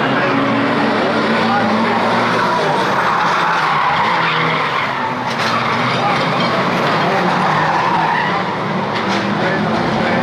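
A pack of saloon stock car engines racing together, with tyres skidding on the track surface.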